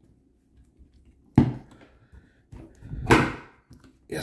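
Two sharp knocks of an airsoft AK and its side-mounted optic being handled and taken off on a wooden table, one about a second and a half in and a second, slightly longer clatter about three seconds in.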